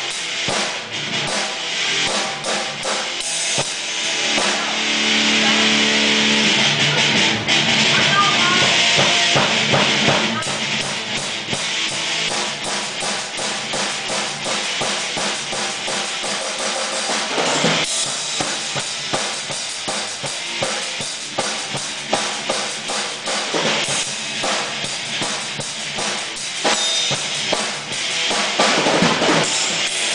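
Drum kit played freestyle: a dense run of strikes on drums and cymbals with a kick drum underneath, louder for a stretch a few seconds in.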